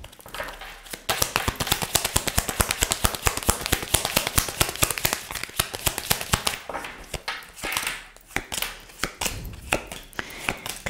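A tarot deck being shuffled by hand: a fast, even run of card clicks lasting about six seconds. Near the end come a few separate taps as cards are dealt onto the table.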